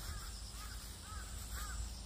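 Several short, faint bird calls, about four in two seconds, over a steady high insect drone and a low rumble.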